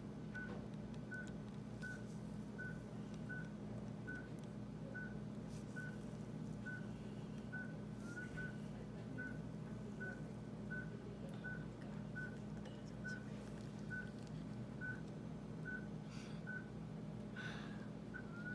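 Anesthesia monitor beeping with the patient, a short high beep a little under once a second at a slightly uneven pace, over a steady low equipment hum. A few soft clicks come through now and then.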